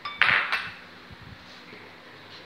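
A utensil knocking against a stainless steel cooking pan: two sharp clinks about a third of a second apart, ringing briefly.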